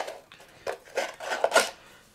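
Cardboard deck box being handled and opened by hand, its cardboard parts rubbing and scraping against each other in a few short bursts.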